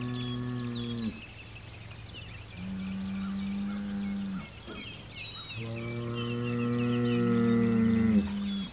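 Bulls bellowing back and forth in territorial challenge: one long call ends about a second in, a shorter, higher one comes in the middle, and a louder, deeper one starts past halfway and runs on. Birds chirp throughout.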